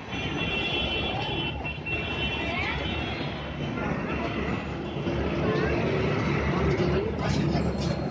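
Busy street traffic: motor vehicles running close by, with people's voices mixed in.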